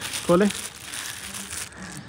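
Plastic shopping bags and packets rustling and crinkling as a hand rummages through them.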